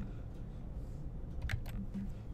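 Keys of a computer keyboard tapped, a few sharp clicks with the clearest near the end, over a steady low hum.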